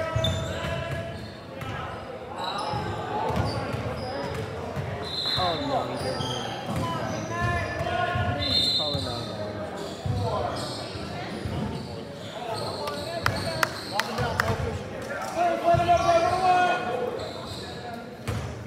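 Indoor basketball game: voices calling out across the gym and a basketball bouncing on the hardwood court, echoing in the large hall. There are short high sneaker squeaks, and a quick run of sharp knocks about three-quarters of the way through.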